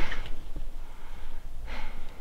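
A person's breathing close to the microphone: a breathy exhale at the start and another near the end, over a steady low rumble.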